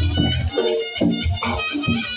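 A Reog gamelan ensemble playing live: a reedy shawm (slompret) holds a steady, piercing melody over regular low drum and gong strokes about twice a second.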